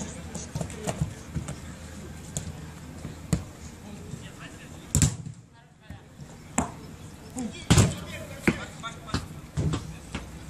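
A football being kicked on the pitch: a series of sharp thuds, the loudest about five seconds in and just before eight seconds, over players' distant shouts and voices.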